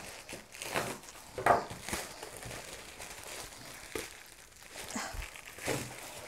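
Plastic shipping mailer being cut open with a knife and pulled apart: the plastic crinkles and rustles in irregular bursts.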